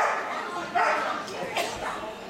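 A dog barking repeatedly in short, high barks a little under a second apart.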